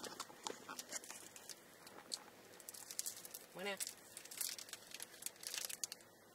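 A Kinder Bueno wafer bar being bitten and chewed close to the microphone, with its plastic wrapper crinkling: a run of small crisp crackles and clicks, thickest about four and a half to five and a half seconds in.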